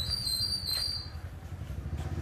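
A motorbike engine running nearby, heard as a low steady hum, with a brief high-pitched squeal over it in the first second.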